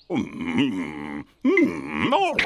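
A cartoon man's voice making two drawn-out wordless vocal sounds, the second starting about a second and a half in.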